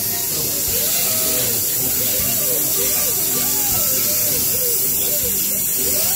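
Dental prophy handpiece whirring steadily as its rubber cup polishes a child's teeth, over the constant hiss of a saliva ejector's suction.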